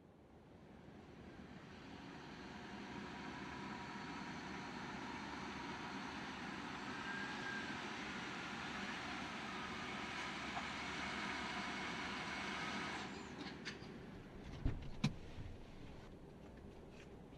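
A steady rushing mechanical noise, like distant traffic or machinery, builds up over the first few seconds, holds steady, then cuts off sharply about thirteen seconds in. A couple of soft thumps follow near the end.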